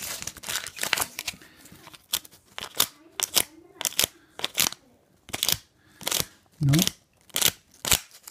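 Blue painter's tape being pressed onto and peeled off a floor tile again and again, giving a run of short sticky crackles, several a second from about two seconds in.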